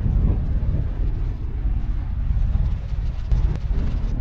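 Wind buffeting the microphone: a loud, irregular low rumble that rises and falls in gusts.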